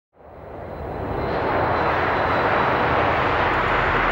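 A rushing noise swells up from silence over about the first second and a half, then holds steady.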